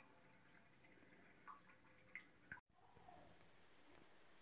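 Near silence, with three or four faint, short drips of water in a toilet that has just been flushed with its supply shut off, its tank drained and not refilling.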